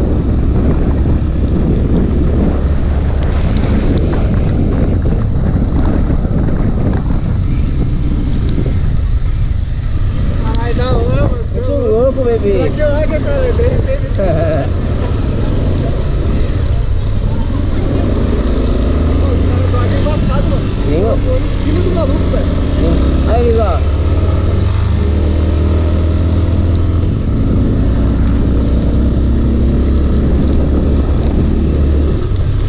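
Motorcycle engine running as the bike rides along a wet road, with wind buffeting the microphone.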